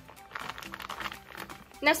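A thick clear plastic bag crinkling softly as hands handle it and smooth it flat, under quiet background music.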